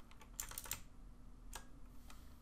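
A few faint, scattered computer keyboard keystrokes as code is typed.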